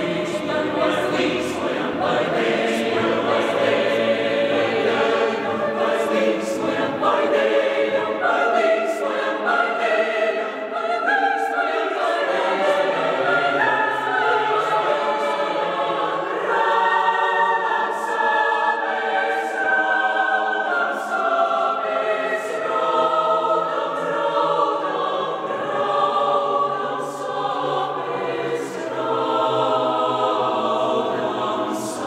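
Mixed choir of women's and men's voices singing in a church, holding long chords that move step by step, at a steady full level.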